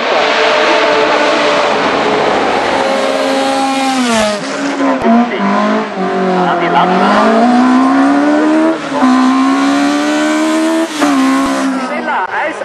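Racing car engines at high revs, loud throughout. The engine note falls and climbs again several times as the cars lift, change gear and accelerate through the bends.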